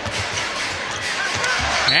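Basketball being dribbled on a hardwood court during live play, over steady arena crowd noise.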